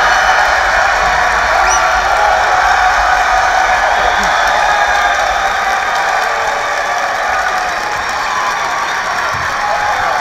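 Arena crowd cheering and applauding, a dense steady roar that slowly eases off.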